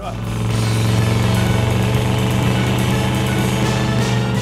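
1976 Ford Gran Torino's V8 engine running as the car drives past, a steady low drone that comes up quickly and holds.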